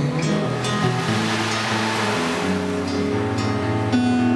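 Ocean drum tilted slowly so its beads roll across the head in a surf-like wash that swells in the middle, over sustained acoustic guitar notes.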